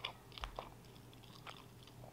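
Faint close-miked chewing of a mouthful of croissant pastry, with a few soft short clicks of the mouth and teeth.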